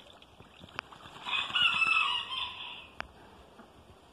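A rooster crows once, about a second in, a single call lasting about a second and a half that drops in pitch at the end.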